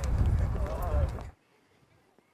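Outdoor ambience: wind rumbling on the microphone, with voices in the background and a horse's hooves clopping. It cuts off abruptly about a second and a half in, leaving near silence.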